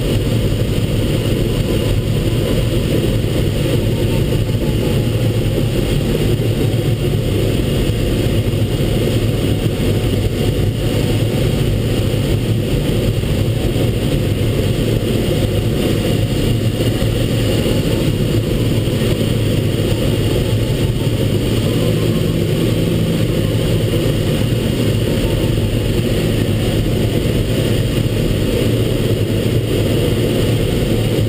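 Steady rush of airflow over the canopy in the cockpit of a Schempp-Hirth Mini Nimbus sailplane in gliding flight. Under it runs a faint tone that slowly sinks and rises in pitch, the variometer's audio signalling sink and lift.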